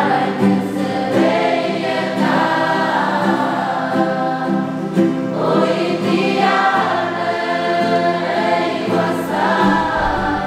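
A mixed group of young men and women singing a gospel hymn together in unison over strummed acoustic guitars.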